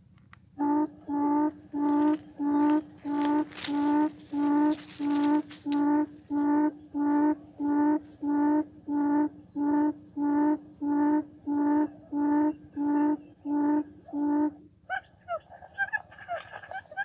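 Quail calling from a cage trap: a long, evenly paced series of low hooting notes, about two a second, the call that lures wild quail to the trap. Near the end the hooting stops and gives way to a quicker, higher chattering.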